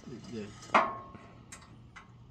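A single sharp metal clank with a short ringing tone, about three quarters of a second in: a square-tubing steel log stop knocking into its socket on a welded steel sawmill bed.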